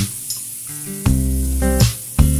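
Chopped garlic and ginger sizzling as they fry in hot oil in a pan. Background music plays over the sizzle; it drops out for about the first second and comes back loud after that.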